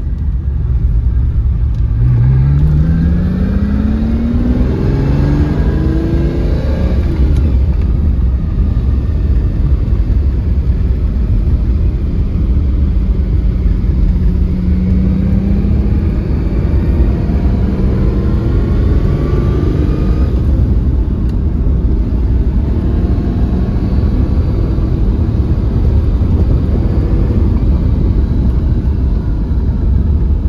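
The 5.2-litre V12 of a 1989 Lamborghini Countach 25th Anniversary, heard from inside the cabin while driving. Over a constant low rumble, the engine note climbs steadily for about five seconds under acceleration, then drops back, holds steadier, and rises again later on.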